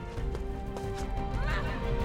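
A horse whinnying once, about a second and a half in, with hooves clip-clopping, over a film score of sustained orchestral notes.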